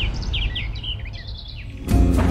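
Birds chirping in a string of short, quick calls over background music that is fading out; the chirps thin out and stop after about a second and a half.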